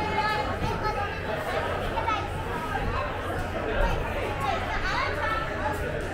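Indistinct background chatter of many people talking at once, steady throughout.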